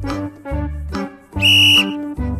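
Background music with a steady beat, cut across about one and a half seconds in by a single short, loud blast of a whistle: the signal for the pupils to copy the next pose.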